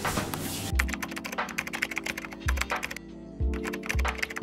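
Computer-keyboard typing sound effect: a quick run of key clicks with a short pause about three seconds in, over background music with a deep beat. A brief rush of noise comes just before the typing starts.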